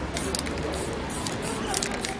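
Aerosol spray-paint can hissing in several short bursts as paint is sprayed onto the board.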